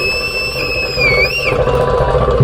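A long, high whistled note over the steady noise of the audience. It slides down, then holds and wavers before stopping about one and a half seconds in.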